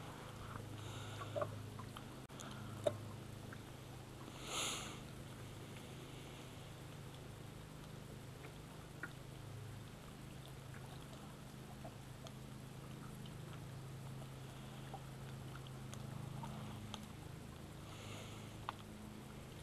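Quiet ambience aboard a small fishing boat: a steady low hum, a few faint clicks of rod and reel handling, and a short rustle about four and a half seconds in.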